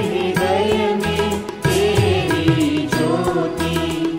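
Indian devotional song: a voice carrying a wavering melody with vibrato over a steady percussion beat and bass.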